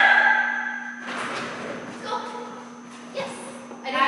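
Indistinct voices echoing in a large hall. About a second in there is a noisy burst lasting about a second.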